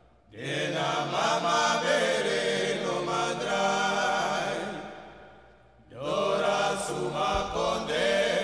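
Group of voices singing a chant in a Surinamese kawina recording. Two sung phrases each fade away, with a short lull just before the second.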